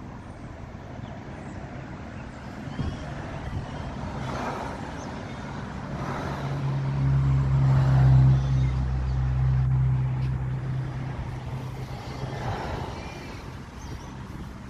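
A motor vehicle's engine hum, steady in pitch, swelling about six seconds in, loudest near the middle and fading out a few seconds later, over outdoor background noise.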